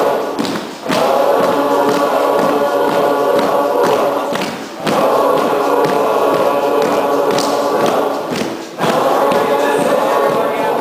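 A large group of voices singing together in repeated phrases about four seconds long, with short breaks between phrases and occasional thumps.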